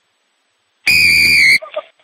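Referee's whistle, one short loud blast about a second in, lasting well under a second at a steady high pitch that dips slightly as it stops.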